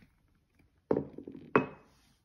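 Two sharp knocks on a wooden stair tread, about two-thirds of a second apart, the second with a short ring.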